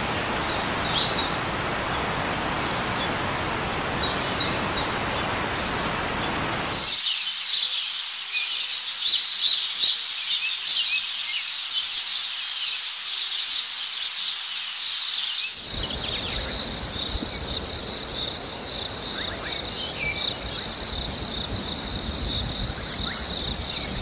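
Forest birds chirping and calling over the rumble and wind noise of a moving open safari jeep. For several seconds in the middle the rumble drops away and a dense chorus of bird calls stands out. In the last third a steady high insect drone sets in over the driving noise.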